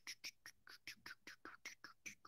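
A run of faint, quick clicks, about seven a second, from keys tapped on a computer keyboard.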